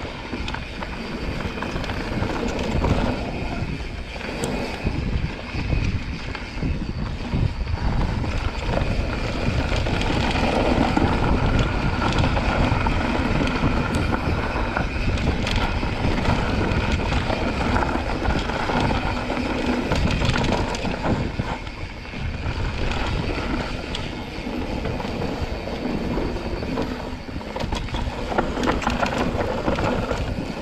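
Mountain bike descending a dirt singletrack at speed: a continuous rush of tyres on dirt and the bike rattling over bumps, mixed with wind buffeting the microphone.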